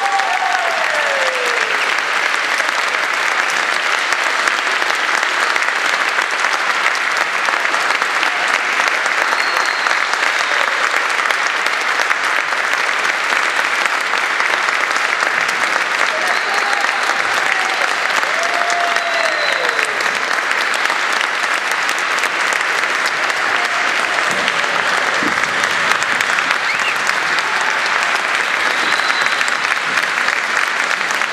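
Audience applauding steadily, with a few cheers rising and falling in pitch over the clapping.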